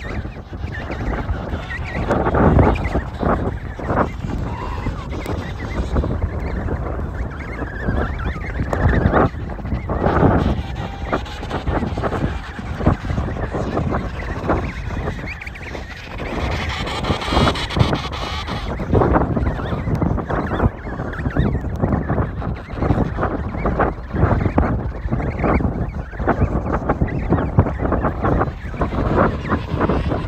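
Wind buffeting the microphone in irregular gusts, with emperor penguin calls mixed in.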